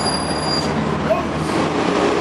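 A large vehicle going by close at hand: a steady noise with a low hum and a thin high whine that fades out under a second in.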